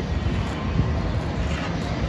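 Outdoor city background noise: a steady low rumble of street traffic and wind.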